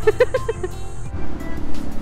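A woman laughing in short, quick bursts. About a second in, a steady low hum of street traffic and vehicle engines takes over, with background music.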